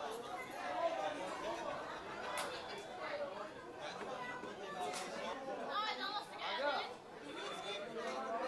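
Background chatter: several people talking indistinctly at once, with a couple of sharp clicks.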